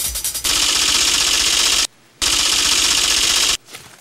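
Transition sound effect: a loud, rapid rattling noise that breaks off briefly about two seconds in, then resumes and stops shortly before the end.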